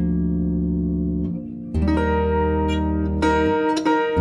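Large harp played by hand: deep bass notes ring under a sustained chord, then a fresh chord is plucked about two seconds in and a few more notes follow near the end.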